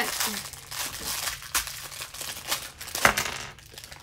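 Foil blind-box toy packets crinkling and rustling as they are handled and torn open, with a sharp click about three seconds in. The handling quietens near the end.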